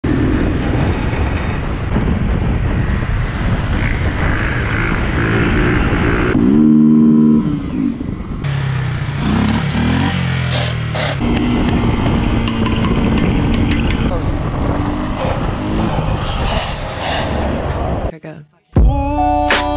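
Small single-cylinder Honda motorcycle engines running and revving hard during wheelies, over a steady rushing noise. A loud rising rev comes about six and a half seconds in, and the sound changes abruptly in places where separate clips are joined.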